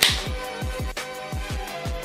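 Hip-hop background music with a steady, deep kick drum beat. Right at the start an aluminium beer can's tab is cracked open with a short, loud hiss.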